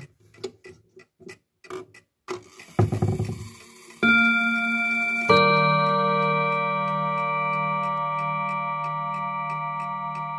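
Junghans W77-400 clock movement ticking, with a short rumbling noise about three seconds in. Its hammers then strike the chime rods twice, a second and a half apart: a bim-bam, a higher note followed by a lower, louder one. Both rods are left ringing and slowly dying away.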